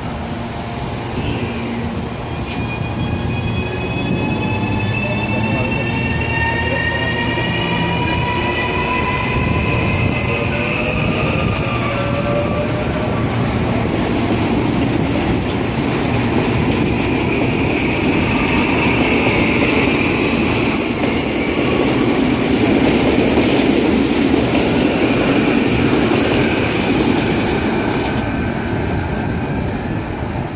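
CPTM 8500-series electric multiple unit pulling away from a station. Its drive gives a whine of several tones that rise together in pitch over the first ten seconds or so as it gathers speed. The cars then run past with a loud, steady rumble and hiss of wheels on rail.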